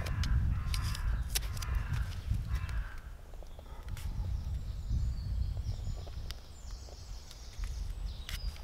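Adhesive tape being pulled off a roll and wrapped around a drill bit: short rasping peels with small clicks and handling noises, mostly in the first three seconds. A low wind rumble on the microphone runs underneath.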